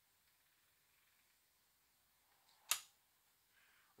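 Near silence: faint room tone, broken by one sharp click a little under three seconds in.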